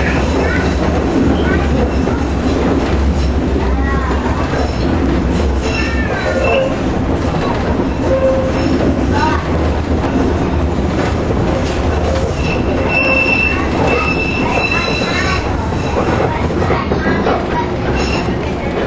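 Former Toronto streetcar running on its track, heard from inside the car as a steady rumble of wheels and running gear. A high, steady wheel squeal rises for a couple of seconds past the middle as the car takes a curve.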